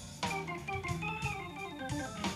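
Live electric blues band playing between sung lines: steady held chords over low bass notes, after a brief dip in level right at the start.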